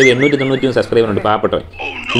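A person talking, with a brief warbling tone that rises and falls several times in quick succession over the first half second.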